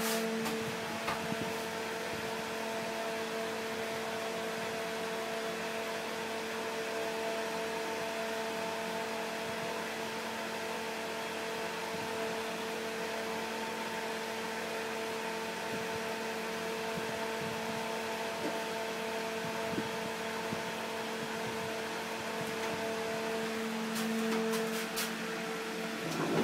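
Steady hum inside the cab of a modernized Nechushtan-Schindler traction elevator, several even tones over a soft hiss. Near the end it grows a little louder and a few clicks sound.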